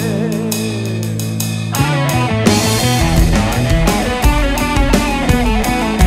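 Progressive rock played on electric guitar and a Roland TD-9KX2 electronic drum kit. A held low chord with a few cymbal strikes gives way, a little under two seconds in, to the full band with busy drumming and guitar.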